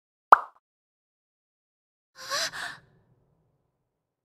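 A single short, sharp pop sound effect, then about two seconds later a brief, breathy, high-pitched gasp in a girl's voice, in two quick parts.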